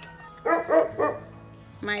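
Dog barking, three quick barks about half a second in, over background music.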